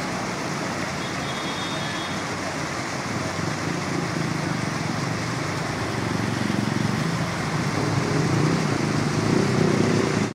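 A stream's water pouring over a small concrete ledge into a pool below: a steady rushing that grows somewhat louder over the last few seconds.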